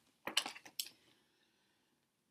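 A hardcover picture book's page being turned by hand: a few short papery rustles and flaps within the first second, then near silence.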